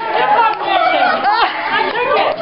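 Several women's voices talking over one another in lively group chatter, with no single speaker standing out.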